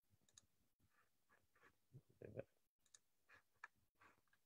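Near silence with faint, scattered computer mouse clicks, and one slightly louder short knock about two seconds in.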